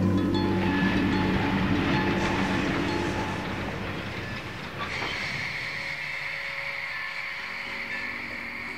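A rumbling, rattling noise under the last notes of the music as they fade out, with a steady high tone joining about five seconds in.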